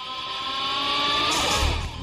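Radio production sound effect between station IDs: a loud, buzzy sustained tone that rises slowly in pitch, then slides down with a deep thud about one and a half seconds in.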